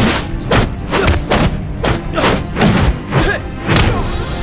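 Staged martial-arts fight sound effects: a quick run of punch and kick hits and thuds, about two or three a second, over background music.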